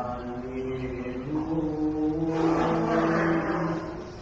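Orthodox liturgical chant sung by a man's voice in long held notes, stepping from one pitch to the next.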